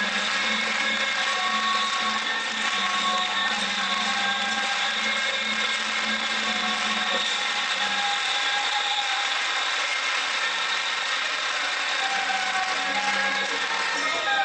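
Traditional Taiwanese temple-procession music: reed horns play a wavering, gliding melody of held notes over a steady low drone, continuous and loud.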